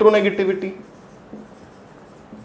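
A man's voice trails off in the first part of a second. Then a marker writes faintly on a whiteboard.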